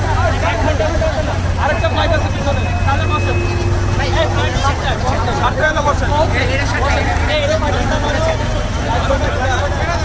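Crowd of protesters talking and calling out over one another, many voices at once, over a steady low rumble.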